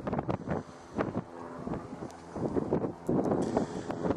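Wind buffeting the camcorder microphone in irregular gusts and thumps, with no steady engine tone.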